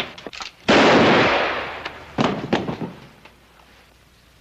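A sudden loud bang about a second in that rings out and fades over about two seconds, followed by a few smaller knocks.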